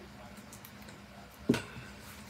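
A single sharp knock about one and a half seconds in: a coffee cup being set down on a hard surface.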